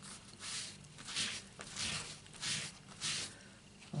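A sponge rubbed in short back-and-forth strokes over a rubber stamp, about five swishes, one every half second or so, wiping the stamp clean after use.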